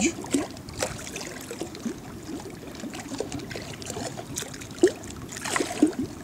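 Small waves lapping and slapping against the hull of a small boat, with scattered light knocks and a sharper slap a little before the end.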